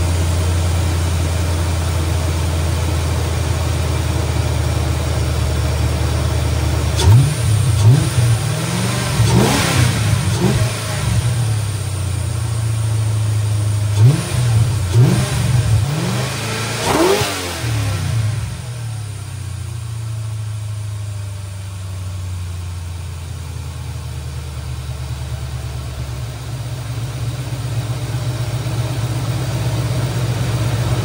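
Mercury Grand Marquis's 4.6-litre two-valve modular V8, breathing through a freshly fitted AFE cold air intake, idling steadily, then revved by hand at the throttle in two bursts of several quick blips, each rising and falling back, before it settles to idle again. It runs normally: everything seems to be working as it should.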